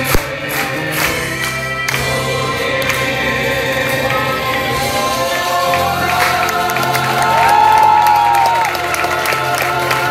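Live Italian folk number: a chorus of voices singing together with guitar accompaniment, with an audience's crowd noise underneath. A long held high note comes about two seconds before the end and is the loudest moment.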